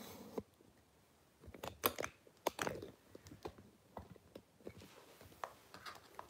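A scatter of faint, irregular clicks and small taps, most of them in the middle seconds.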